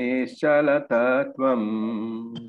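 A voice chanting a Sanskrit verse in slow melodic phrases, each note held steady, with brief breaks between phrases.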